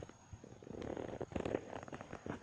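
Breeze buffeting the microphone: an uneven low rumble with small scattered clicks.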